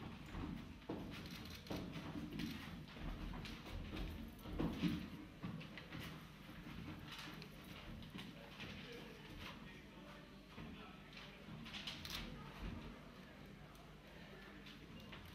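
A dancer's shoes stepping, sliding and stamping on a stage floor in an irregular pattern of knocks, with no music. A louder thump comes just under five seconds in.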